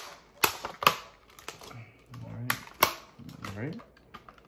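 A series of sharp, irregularly spaced clicks and snaps from handling the plastic packaging of a 1/64-scale diecast car, with a low murmur of voice near the end.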